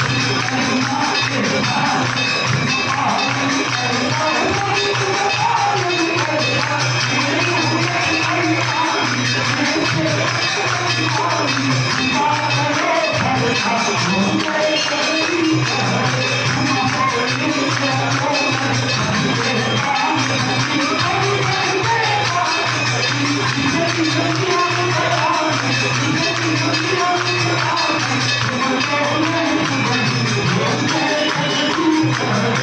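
Temple aarti for the goddess: a crowd of worshippers singing a devotional hymn together over steady jingling percussion, unbroken throughout.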